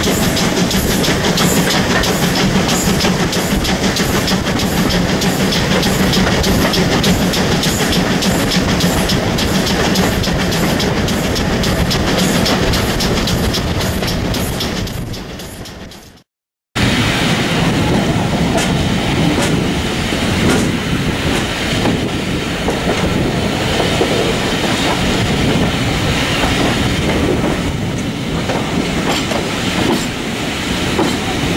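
Railway carriage riding on a moving train, heard from the carriage window: wheels clicking over rail joints in a quick, regular clickety-clack over the running noise. About halfway it fades out into a brief silence, then the train noise starts again without the clear rhythm.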